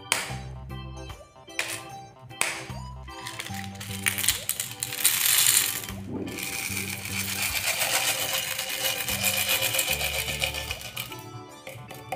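Jelly beans pouring out of a plastic jar and clattering onto a pile of candies: a few sharp clicks early on, then a loud rush of rattling, and a dense run of clicking and pattering from about halfway until near the end. Background music plays throughout.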